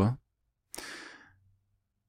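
A man's short breathy exhale, like a sigh, into a close microphone, starting under a second in and fading out over about half a second, followed by a faint low hum.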